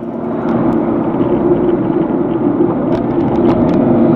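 Steady engine and road noise heard inside a moving car's cabin, swelling a little over the first second and then holding even.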